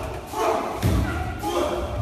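Staged screen fight between stunt performers: a heavy thud about a second in, among voices.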